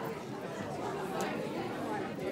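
Steady background chatter of many people talking at once in a busy indoor hall.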